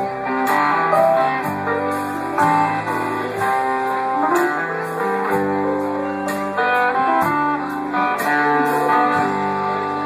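Live band playing an instrumental passage: strummed acoustic guitar and electric guitar over bass notes and keyboard, with drum and cymbal hits keeping a steady beat.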